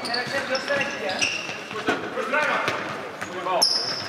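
Futsal ball being kicked and dribbled on a wooden sports-hall floor, a string of short knocks, mixed with short high squeals of players' shoes.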